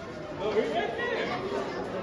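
Chatter of a crowd of people talking over one another in an underground tunnel.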